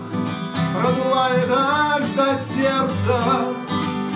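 A voice singing a Russian chanson song to acoustic guitar accompaniment.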